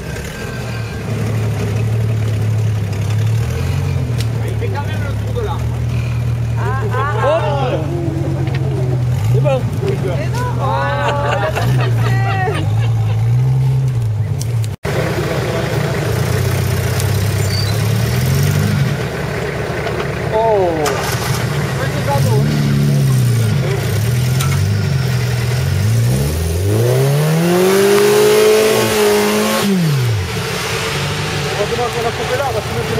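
Off-road 4x4 engines working at low speed through deep mud, the revs rising and falling as the wheels claw for grip. Near the end one engine revs hard and climbs steeply in pitch as the vehicle powers up out of the rut close by. Shouted voices come in between.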